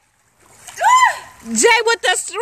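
Silence for a moment, then a single high voiced call that rises and falls, followed by quick speech from people in a swimming pool, with water splashing under the voices.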